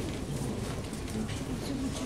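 City street ambience: a steady noise bed with faint, low, wavering calls running through it.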